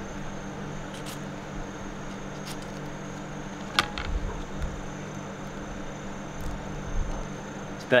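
Steady low machine hum, like a fan, under quiet handling of stink bean pods being slit open with a knife, with one sharp click a little before halfway.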